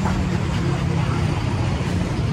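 Steady low rumble of a motor vehicle's engine running, holding an even level.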